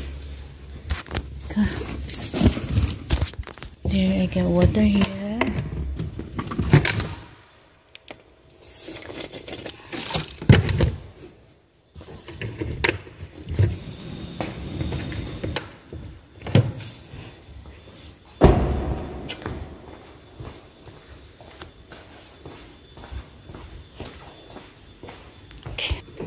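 Thuds, knocks and handling noise inside a car, at uneven intervals, with a brief voice sounding about four to five seconds in.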